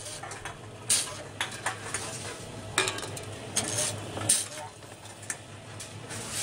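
Tomra T-710 reverse vending machine taking in returned bottles: a steady low hum from its conveyor under the clatter of containers moving and knocking inside, with three sharp knocks as bottles go through. Each bottle is accepted and counted.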